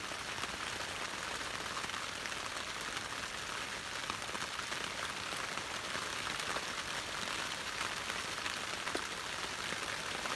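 Steady rain falling on a blue plastic tarp stretched overhead, heard from underneath: an even hiss made of many small drop hits.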